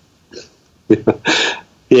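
Speech only: after a short pause with a faint brief sound, a voice says "yeah" about a second in, and talking resumes near the end.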